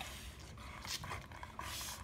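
American Bully dog panting, a few short breaths about half a second apart in the second half.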